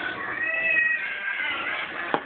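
White-faced capuchin monkey giving high-pitched whistling calls: one held for about half a second, then a shorter bending one.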